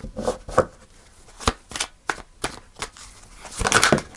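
Tarot cards being shuffled by hand: a series of short, separate snaps and taps of the cards, with a quicker flurry near the end.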